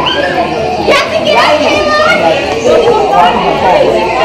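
Several people talking at once, adults and young children, with children's high voices rising above the chatter.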